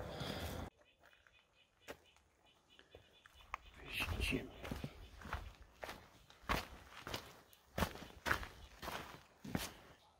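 Footsteps on a rocky trail: irregular steps, about two a second, starting a few seconds in after a near-silent stretch.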